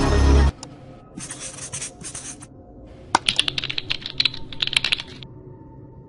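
Electronic music cuts off about half a second in, followed by two runs of rapid clicking like typing on a keyboard, the second longer and sharper, from about three seconds in to about five.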